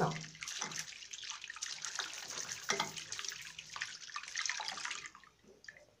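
Water running from a bathroom sink tap with hands rubbing and splashing under the stream as they are washed. The running water stops about five seconds in.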